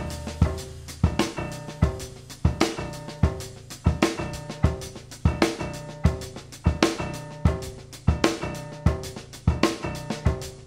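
Jazz band music from a studio album: a drum kit plays a busy pattern of kick, snare and rim hits, one to two strong hits a second, over sustained low notes.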